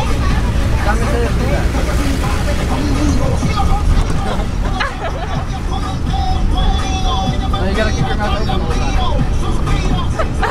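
Children laughing and shrieking inside a passenger van, over a steady low rumble from the vehicle.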